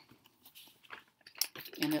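Soft rustling and small clicks of a plastic project bag being picked up and handled, with a word of speech near the end.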